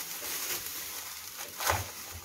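Plastic bags crinkling and rustling as frozen blocks of grated carrot are lifted out of plastic containers, with one soft knock about one and a half seconds in.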